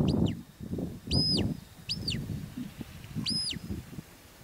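Shepherd's herding whistle giving commands to a working sheepdog. There is a quick pair of short high notes, then three separate arched notes, each rising, holding and falling.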